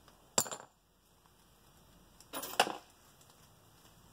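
Two short bursts of clicking and rustling handling noise from gloved hands rummaging through a jacket's pockets: one about half a second in, a longer one a little past the middle.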